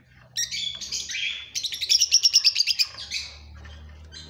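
Caged cockatiels chirping: high calls start about half a second in, then a fast run of about ten chirps a second that fades out near three seconds.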